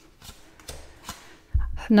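Tarot cards handled off a deck and laid onto a table: faint card slides and light taps, with a low thump about one and a half seconds in.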